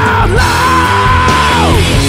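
Male rock vocalist belting a long, high held note that falls away near the end, over a loud rock backing track.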